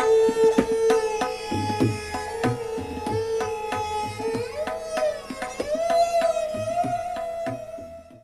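Hindustani classical music: a sarangi bowing a held, sliding melody over tabla strokes with deep bass-drum thumps.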